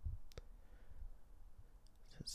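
Quiet room with a single faint, sharp click about a third of a second in and a fainter tick near the end.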